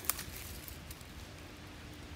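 Quiet woodland background noise in a pause between words, with a short click just after the start and a faint steady hum in the second half.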